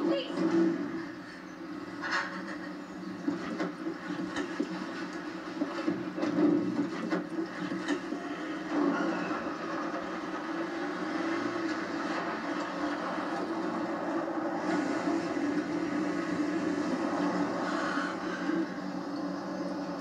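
Soundtrack of a TV drama heard through a television's speaker: a steady low hum with a few short knocks in the first half, then a steadier, slightly louder even noise.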